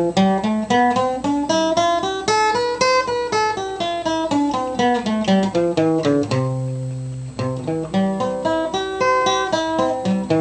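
Acoustic guitar played with a pick: single notes picked one after another across the strings in a scale, climbing in pitch for about three seconds and then coming back down. In the second half a lower phrase follows, with some notes left to ring longer.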